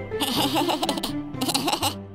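A cartoon character's high, giggling laugh in two bursts over background music.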